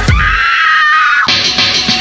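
K-pop electro-pop song in a short break: the kick drum and bass cut out, leaving a thin, filtered high-pitched layer. It changes to a brighter, buzzier band about halfway through.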